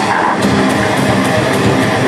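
Death metal band playing live: heavily distorted electric guitars and bass over drums, with a cymbal struck about four times a second.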